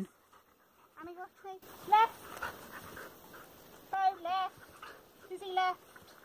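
A dog whining in short, high, rising and arching cries, four or five times. It is excited and begging while waiting for treats held above it.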